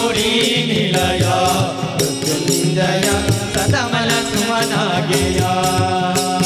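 Male voices singing a Hindu devotional bhajan chant, accompanied by small hand cymbals struck in a quick, steady beat.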